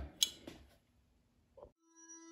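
A single sharp click about a quarter second in, then near silence with a brief soft blip near the end.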